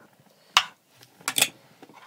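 Knives and forks clinking and scraping against a plate and a frying pan as pancakes are cut and eaten: a few short, separate clinks.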